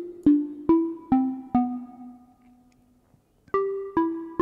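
Ableton Meld synthesizer in its Fold FM voice playing a short plucked melody. Notes with sharp attacks come about two a second, stepping down in pitch, and the last one rings out for over a second. After a brief gap the notes start again near the end.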